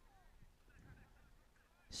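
Near silence, with faint distant calls.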